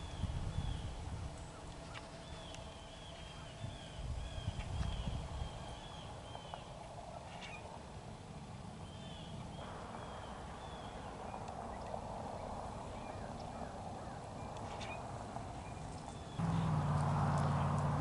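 A flock of gulls calling from the shore: many short, arched, high calls in quick succession over a low rumble, thinning out after about ten seconds. A low, steady motor hum comes in about a second and a half before the end.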